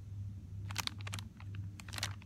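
Plastic-bagged party-supply packages handled on a store's pegboard hook: quick crinkles and clicks in two short clusters, one near the middle and one at the end, over a low steady hum.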